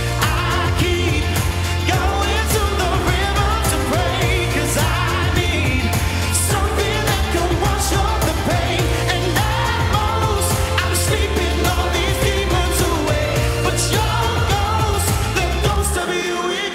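Live pop song: a male singer singing over a band, with a heavy bass line and a steady drum beat.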